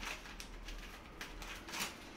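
Paper sugar bag being handled and opened, with light, irregular crinkling and small clicks.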